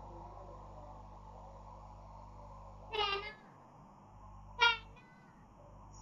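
A cat meowing twice, two short calls about a second and a half apart, the first slightly falling in pitch, over a low steady hum.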